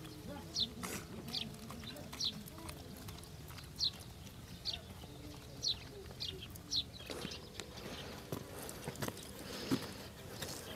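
A bird calling: short, high, falling chirps repeated about once a second, over a low outdoor background. From about seven seconds in, the chirps give way to louder rustling and a few knocks.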